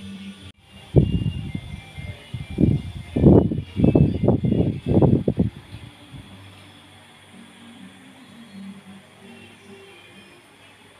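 Low, irregular rumbling bumps of handling noise on a phone microphone while the camera is moved, lasting about five seconds and stopping near the middle; faint background music underneath.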